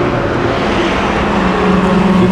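Motor vehicle noise: a steady rumble and hiss with a low hum that grows louder in the second half.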